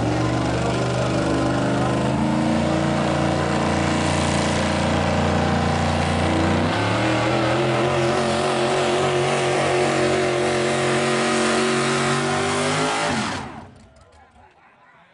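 Engine of a small pulling vehicle held at high, steady revs at full throttle while it pulls a weight sled, with a step up in pitch about halfway through. Near the end the wheels spin in tyre smoke as the pull ends and the engine cuts off suddenly.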